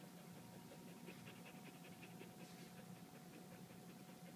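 A goldendoodle panting softly through an open mouth, a faint quick rhythm of breaths that fades out near the end.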